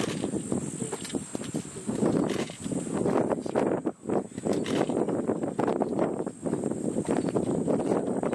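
An African elephant browsing in acacia bushes. Branches and leaves crackle and rustle in quick irregular strokes as its trunk pulls them, with a short lull about four seconds in.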